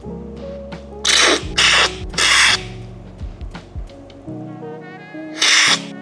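Loud, hissing slurps of brewed coffee sucked off a cupping spoon to spray it across the palate, three in quick succession about a second in and another near the end, over background music.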